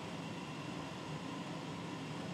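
Steady, even background hiss of room tone, with no distinct sound standing out.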